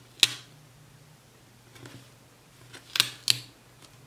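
Three sharp clicks or taps from hands handling planner stickers and paper close to the microphone: one just after the start, then two close together about three seconds in, with quiet between.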